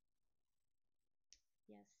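Near silence: room tone, broken by one short click about a second and a half in, then a woman starts speaking near the end.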